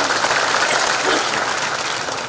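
Audience applauding, a dense steady clapping that eases off slightly near the end.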